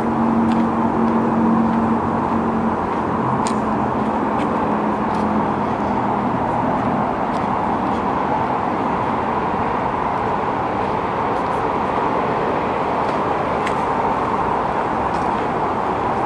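Steady roar of road traffic, with an engine hum that fades away in the first half, and a few faint scattered ticks.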